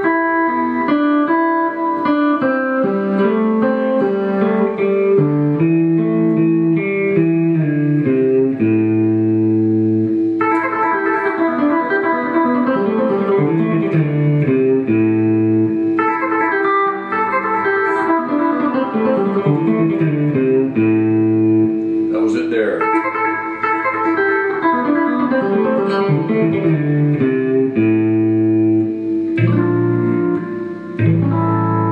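Fender Stratocaster electric guitar played fingerstyle at a slow tempo: a blues shuffle with a thumb-picked bass line under finger-picked rhythm and lead notes.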